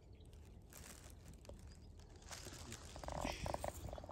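Quiet outdoor ambience with a low wind rumble and faint handling clicks. About three seconds in comes a short, harsh, rasping animal call, broken into a few quick pulses.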